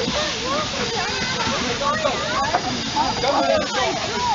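Steady hiss of steam from a standing LMS Stanier Class 5 'Black Five' steam locomotive, No. 45231, with the voices of adults and children chattering close by.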